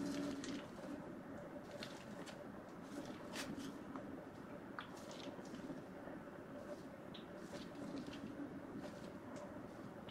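Faint squish and crinkle of a plastic zip-top bag of soap frosting being handled and squeezed, with scattered small clicks over a steady faint hum.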